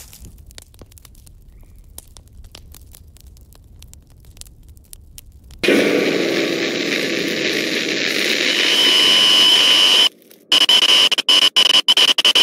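Faint low rumbling ambience with scattered crackles, then about five and a half seconds in a sudden loud burst of harsh TV-static sound effect. It builds over several seconds with a high steady whine inside it, drops out briefly near 10 s, and comes back as choppy, stuttering static bursts.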